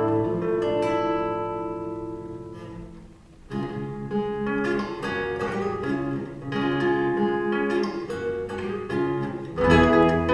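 Classical guitar and lever harp playing a duet: a chord rings and fades over about three seconds, then quick plucked notes start up again and run on.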